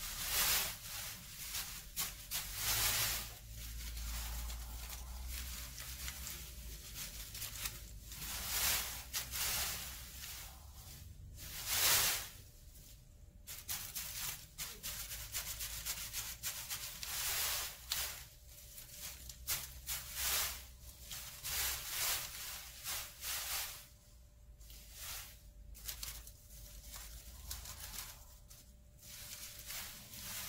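Cut white paper streamers on a sinjangdae bamboo spirit pole rustling and crinkling as they are fluffed and untangled by hand and the pole is turned, in irregular bursts, the loudest about twelve seconds in.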